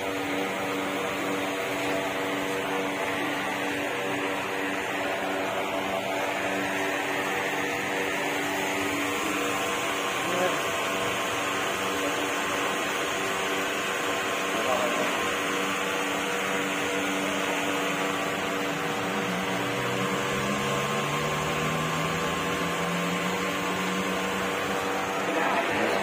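Steady background din: indistinct voices over a constant hum with several steady tones, the level even throughout.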